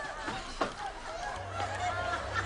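Wordless shouts and yelps from several excited voices, with a thump about half a second in and a low hum coming in near the end.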